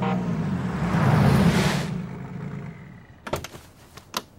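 A car passing at speed: a swelling rush of engine and road noise that peaks about a second in and dies away over the next two seconds. A couple of short, sharp clicks near the end.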